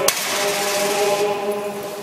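Orthodox church chanting: voices holding long, steady notes that fade near the end. A single sharp click comes just after the start.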